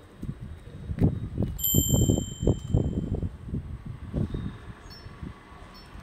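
A gray Lhasa apso chewing a banana close to the microphone: a run of low, soft chomps about three a second that fade off after about four seconds. A bright chime rings once about a second and a half in.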